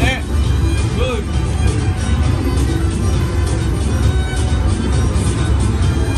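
Buffalo Triple Power video slot machine playing its reel-spin music and short chimes as the reels turn, over loud, steady casino-floor noise with background chatter.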